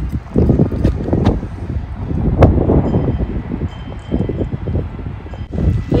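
Wind buffeting the microphone in uneven, rumbling gusts, with a couple of sharp clicks.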